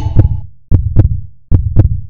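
Heartbeat sound effect: paired deep thumps, lub-dub, repeating about every 0.8 seconds. The tail of a held electronic chord fades out about half a second in.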